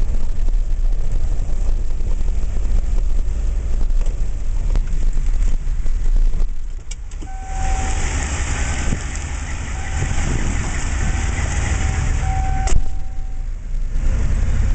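Vehicle engine and road noise heard from inside the cab: a steady low rumble. About halfway through, a loud hiss joins for some five seconds, with a faint high tone coming and going in it.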